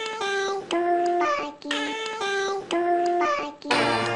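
A high, childlike voice singing a melody in short held notes, in phrases broken by brief pauses, with little or no bass beneath it.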